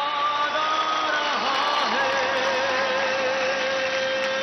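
Stage performance music made of sustained held tones, with a long wavering note carried through the second half.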